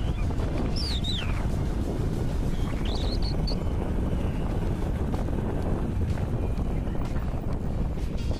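Wind buffeting the microphone: a steady low rumble while the camera moves in the open. A few brief high, falling chirps sound within the first few seconds.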